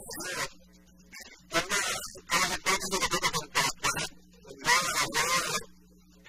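A person's voice in several bursts with short pauses between them.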